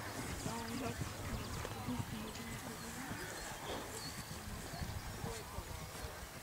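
A horse's hoofbeats going at a gallop across the cross-country course, with faint chatter from spectators behind them.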